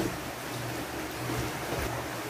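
Steady background hiss with a low, even hum underneath and no distinct event.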